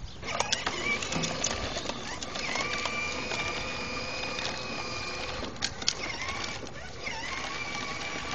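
A battery-powered toy ride-on quad's electric motor and gearbox whine steadily as it drives over pavement. The pitch dips briefly twice in the second half, and there are a couple of sharp clicks just past the middle.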